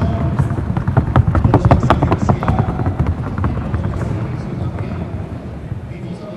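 Rapid, even hoofbeats of a Colombian Paso Fino horse gaiting across a wooden sounding board, sharp clicks that fade out about halfway through.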